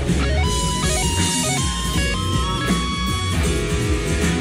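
Electric guitar solo over a full band in a live concert recording, the lead line stepping through a fast two-hand tapping passage that goes wrong: a "tap mishap".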